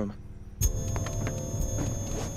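A car door opening: a sharp click of the latch about half a second in, then faint rustling and ticks as someone moves out of the seat, under a steady held tone.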